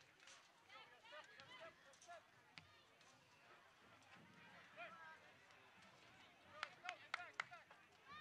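Faint, distant shouts and calls from players and the sideline during open play. A quick run of sharp knocks comes near the end.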